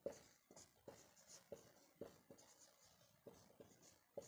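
Marker pen writing on a whiteboard: faint, irregular taps of the tip, about two a second, with a light high scratch as each stroke is drawn.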